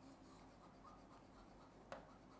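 Faint scratching of a marker writing on a whiteboard, with a short tick near the end.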